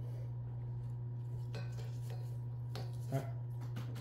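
A cockatoo's beak clicking a few times, sharp and brief, as it tastes a sunflower. A steady low hum runs underneath.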